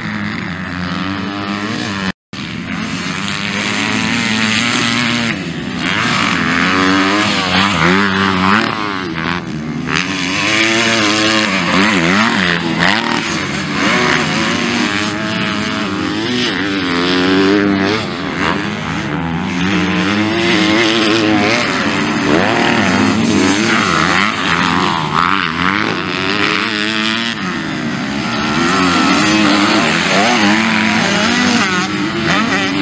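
Motocross bike engines revving up and down as the riders accelerate and shift over the track, several bikes at times. The sound cuts out completely for a moment about two seconds in.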